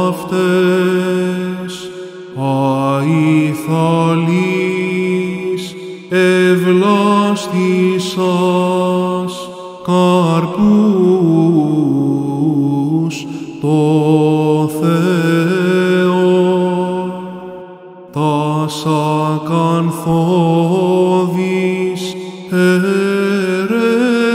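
Byzantine chant: a solo male voice sings long melismatic phrases, drawing each syllable out over many notes. The phrases are broken by short breaths, with a longer break about three-quarters of the way through.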